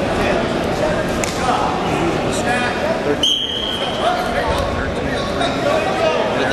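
Spectators' and coaches' voices echoing in a large gym, with a short, high, steady whistle blast about three seconds in: a referee's whistle restarting the wrestling bout.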